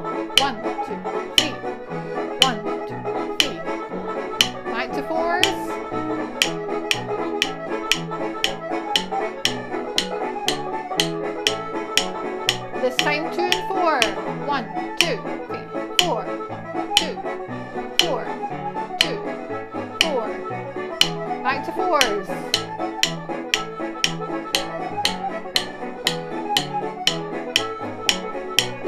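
Wooden drumsticks tapping a steady beat, about two sharp taps a second, in fours along to recorded backing music with a repeating bass line.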